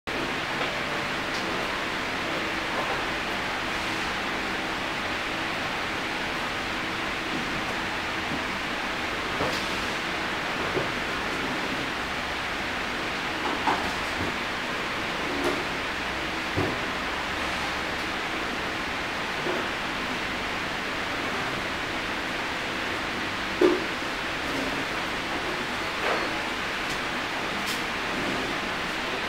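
Steady hiss of background noise, with a few faint clicks and knocks scattered through it; the loudest knock comes about two-thirds of the way in.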